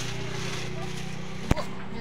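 Outdoor market background: a steady low hum under faint voices, with one sharp click about one and a half seconds in.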